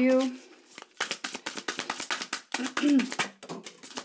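A deck of tarot cards shuffled by hand: a quick run of light card flicks and taps, starting about a second in after a throat-clear.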